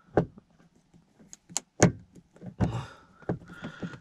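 A screwdriver working the screw of a plastic sun visor bracket in a car's headliner: a few sharp clicks and knocks, the loudest a little under two seconds in, with short bits of scraping between them.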